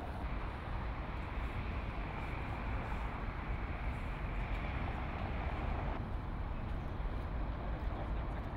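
Steady outdoor city ambience by a harbour: a low rumble under an even hiss, with no single event standing out. The texture shifts slightly at the picture cuts, just after the start and about six seconds in.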